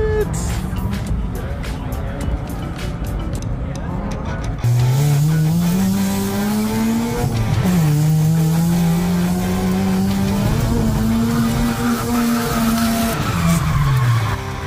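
A drift car's engine revving hard on the course, its pitch rising and then held high through the run with a brief dip. Tire squeal comes in, and the engine note drops off near the end. Before this, for the first few seconds, there is a noisy rumble of the event.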